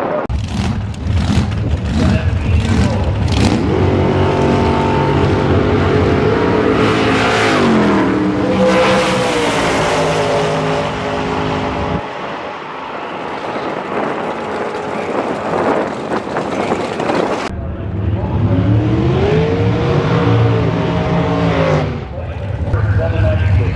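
Drag racing car engines running hard on the strip, their pitch rising in stretches as they accelerate. The sound cuts abruptly about halfway through to a quieter passage, then another engine revs up near the end.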